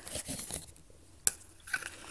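Soft rustling of shredded bedding in a plastic shipping cup as it is handled, with one sharp click a little over a second in.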